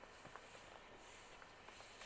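Near silence, with a faint rustle of a hand smoothing glued paper flat onto a notebook page.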